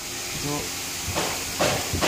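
Two short hissing noises, about half a second apart near the end, as a white uPVC window profile is slid into position on a welding machine's table. A brief spoken word comes before them.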